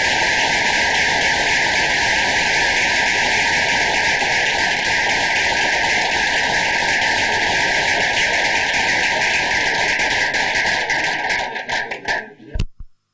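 Audience applauding at the close of a talk: steady, dense clapping that thins out and dies away at the very end.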